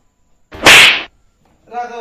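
A single loud slap of a balloon being swung onto a seated man's head: a sudden crack with a hissing tail lasting about half a second.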